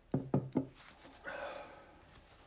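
Three quick dull knocks, about a fifth of a second apart, followed about a second later by a softer, briefer noise.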